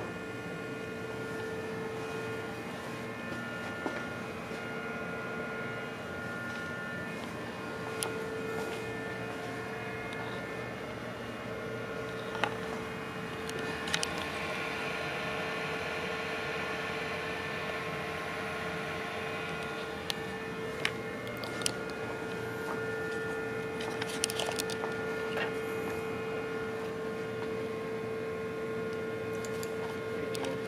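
Fraxel Dual laser console running, a steady hum with a strong steady tone and fainter higher tones from its cooling and electronics. A handful of short clicks and knocks from handling the machine are scattered through it.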